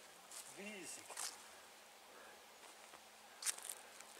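Quiet forest ambience with a short wordless voice sound, a brief rising-then-falling hum, about half a second in. A few short clicks and rustles follow, the sharpest about three and a half seconds in.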